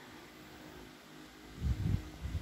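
Quiet room noise, then a few dull low rumbling bumps near the end: handling noise on a phone's microphone.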